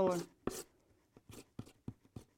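Palette knife working paint on a paper palette: a few short, separate scrapes and taps, the firmest about half a second in.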